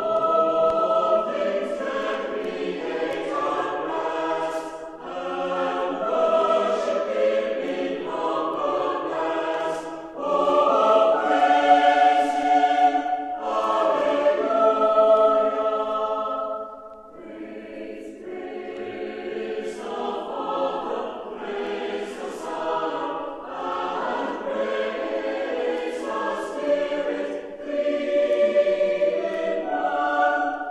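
A church choir singing in several parts, in long held phrases. The singing drops away briefly about seventeen seconds in, then builds again.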